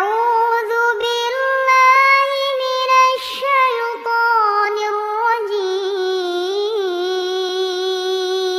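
A young woman's unaccompanied voice reciting the Quran in a melodic tilawat style, drawing out long, ornamented, high notes. She takes a quick breath about three seconds in.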